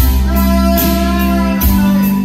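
Live band playing an instrumental passage between sung lines: electric guitar and keyboard over a held bass note, with a beat about a second and a half in.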